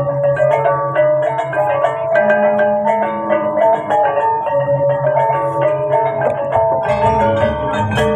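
Balinese gamelan playing: bronze metallophones struck in quick runs of ringing notes over a deeper held tone. About seven seconds in, the music grows fuller, with more bright metallic clatter and more bass.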